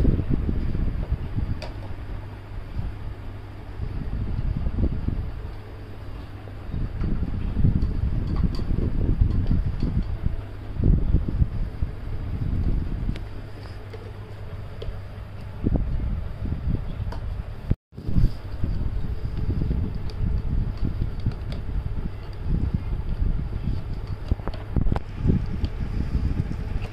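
A fan running: a steady low hum with its air gusting unevenly on the microphone. The sound cuts out for an instant about eighteen seconds in.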